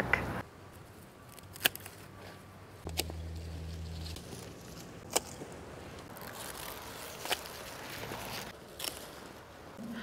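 Hand snips cutting dahlia stems: about five separate sharp clicks spread over several seconds, with light rustling of the foliage in between.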